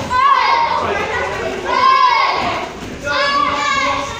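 Children's voices shouting in a large hall: three loud shouts, near the start, in the middle and near the end, over a background hubbub of other children.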